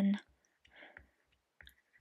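A few faint, light clicks of a stylus tip tapping on a tablet's glass screen, one about a second in and a couple more near the end.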